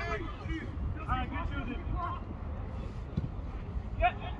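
Short distant shouts from players on the pitch, a few brief calls about a second apart, over a steady low rumble of wind on the microphone.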